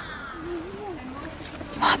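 A dog whimpering: a short, wavering, high-pitched whine.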